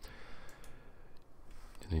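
A few faint clicks of a computer mouse.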